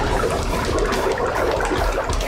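Fries frying in a commercial deep fryer, the oil sizzling and bubbling in a steady loud hiss. The oil is dirty, and the experts blame its heavy bubbling and smoking on the debris in it.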